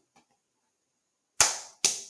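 Near silence, then about one and a half seconds in, two sharp cracks made with the hands, about half a second apart, each with a short room echo.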